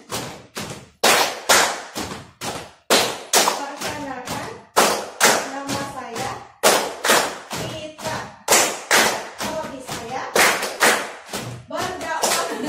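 A group of people clapping hands together in a steady rhythm, about two to three claps a second, with short room echo after each clap. Faint voices come between the claps.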